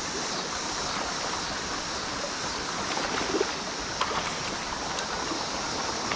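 Creek water running over rocks: a steady rushing, with a couple of faint ticks in the second half.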